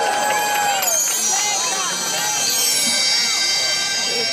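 Show music from loudspeakers with a crowd of spectators talking over it. A long held note ends about a second in, then high steady tones come in under the chatter.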